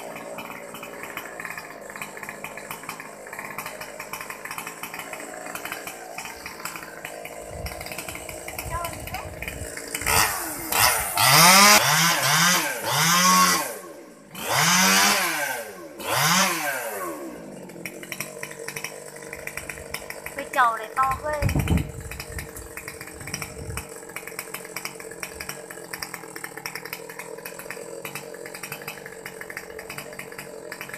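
Stihl 020T top-handle two-stroke chainsaw idling, then revved hard several times in rising-and-falling pulls for about eight seconds from around ten seconds in, before dropping back to idle.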